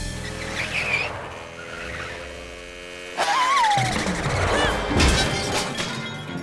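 Cartoon soundtrack: background music mixed with a motorbike engine sound effect. It gets louder about three seconds in, with a short rising-and-falling whistle-like effect, and there is a sharp knock about five seconds in.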